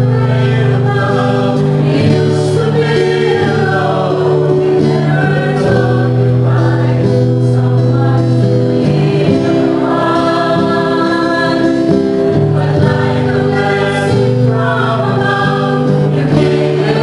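A small choir singing a slow song in long held notes with acoustic guitar accompaniment.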